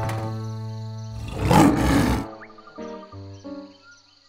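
A cartoon lion roars once, a loud rough burst lasting about a second, starting just over a second in. It sounds over background music, which carries on as short separate notes after the roar.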